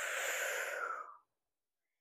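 A woman's forceful breath out through the mouth, a breathy rush lasting about a second before it fades. It is an effort exhale timed to pulling one knee in towards the chest during a core exercise.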